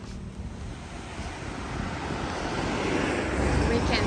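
Road traffic on the coast road, growing louder as a car comes closer, with a low rumble near the end and wind buffeting the microphone.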